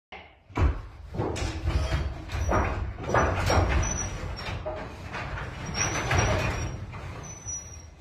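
Sectional garage door rolling open with its opener running: a low rumble with irregular rattles and clanks from the panels on the track, and a faint high squeal now and then.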